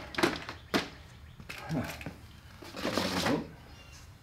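Coffee cans knocking against the rack's metal conduit rods as they are set in place: a few sharp knocks, two of them within the first second.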